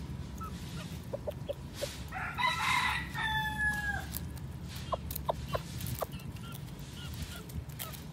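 A rooster crows once, about two seconds in, a rough opening that settles into a long held note before dropping off. Short chicken clucks come before and after it.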